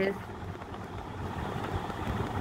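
Steady low background rumble during a pause in speech, with the last syllable of a spoken word fading out right at the start.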